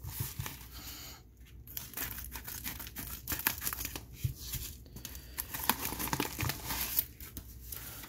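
Plastic bubble mailer being torn open and handled by hand: irregular crinkling and tearing crackles of the plastic throughout.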